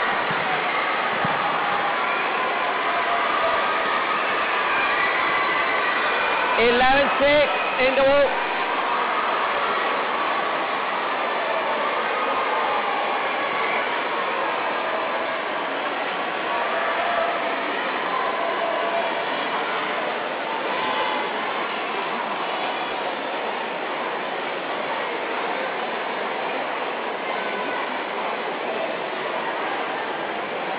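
Steady hubbub of an indoor arena crowd talking, with a loud burst of shouting from about six and a half to eight seconds in as a rally is won.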